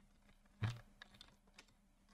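Faint clicks of a computer keyboard in use. One louder, duller knock comes just over half a second in, followed by three or four light clicks.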